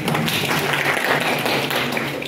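Audience applauding: a dense, even patter of many hands clapping.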